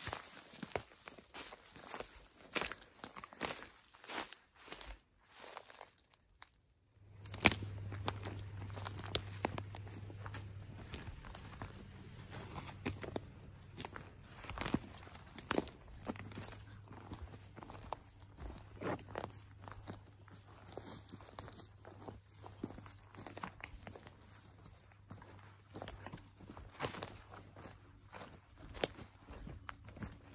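Footsteps of people walking through forest undergrowth, irregular crunches and snaps of twigs, needles and dry ground underfoot, with a short break about six seconds in.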